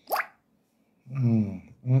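A short, sharp rising pop or bloop at the very start, then a man's drawn-out "mm-hmm" from about a second in, the loudest sound.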